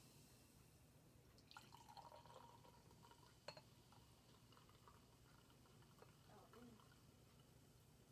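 Faint trickle of carbonated grapefruit soda poured from a glass bottle into a wine glass, with one light tick about three and a half seconds in.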